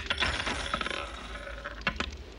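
Metal coins poured from a cloth purse onto a wooden table: a quick clattering jingle of many clinks for about a second and a half, then one last single click near the end.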